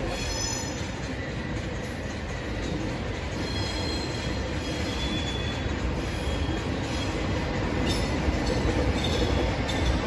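TGV inOui high-speed train pulling slowly into the station, its running rumble growing louder as it nears, with high wheel squeals coming and going several times.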